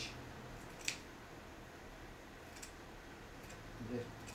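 Scissors snipping through sequined fabric while trimming its glued edge: one clear, sharp snip about a second in, then a couple of fainter snips.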